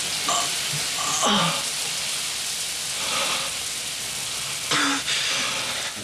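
Film soundtrack of steady running water, with a man's few short gasps and a falling groan about a second in.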